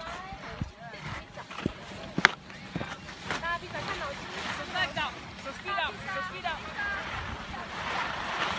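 Young children's voices calling and chattering in the background, high-pitched and busiest in the second half, over wind noise on the microphone. A single sharp click sounds about two seconds in.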